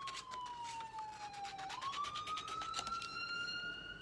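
Scissors cutting down a sheet of construction paper in a run of quick snips. Behind them a siren wails, falling slowly in pitch and then rising again a little under halfway through.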